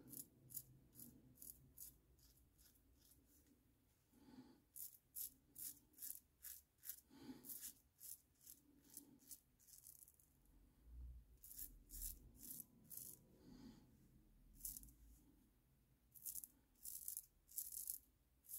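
Stirling Hyper-Aggressive safety razor cutting beard stubble through lather: faint short scraping strokes in quick runs of several a second, with brief pauses between runs. This crisp cutting sound is the razor's audible feedback, which he calls amazing.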